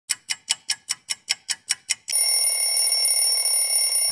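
Sound effect of a clock ticking fast, ten ticks at about five a second, then an alarm bell ringing steadily for about two seconds.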